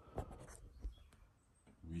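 Handling noise from a phone being picked up and checked: a hand rubbing against it close to the microphone, with a few small clicks and knocks.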